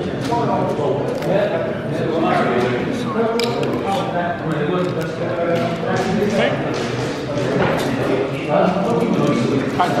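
Indistinct chatter of several voices in a large room, with a few light clicks.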